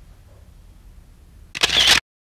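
Low room tone, then about one and a half seconds in a loud, short camera-shutter sound effect that cuts off abruptly.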